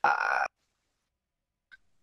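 A person's short, rough hesitation sound, "uh", lasting about half a second.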